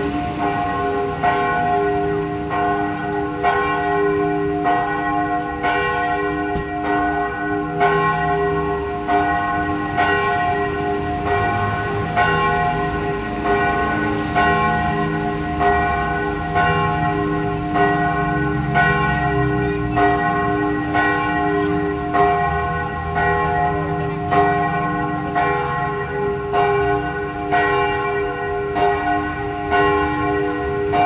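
Church bells in the campanile of the Basilica of Santa Maria Maggiore ringing, struck again and again at an even pace so the tones overlap into one continuous peal.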